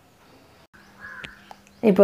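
A short harsh bird call about a second in, over a faint steady hum; a woman starts speaking near the end.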